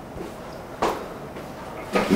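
A single sharp knock a little under a second in, over faint classroom room sound.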